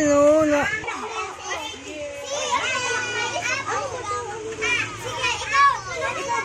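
Children's voices chattering and calling out over one another, high-pitched and overlapping.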